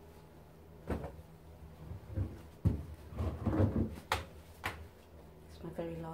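Damp cotton rag rugs being pulled out of a front-loading washing machine drum: a series of knocks and thumps against the machine, the sharpest about two and a half and four seconds in, with fabric rustling over a low steady hum.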